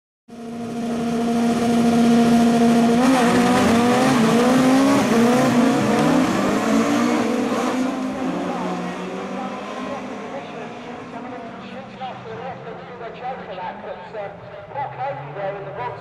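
Several rallycross cars on a start line holding their engines at high revs together, then launching about three seconds in: a loud mass of rising engine notes as they accelerate away through the gears, fading as the pack pulls away.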